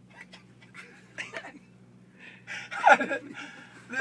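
A man's brief stifled laugh and breathing, loudest about three quarters of the way through, over a low steady hum and a few faint clicks.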